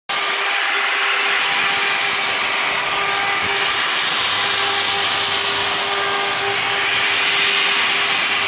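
Small angle grinder fitted with a sanding disc, running steadily with a constant whine as it sands along a wooden slingshot-rifle stock.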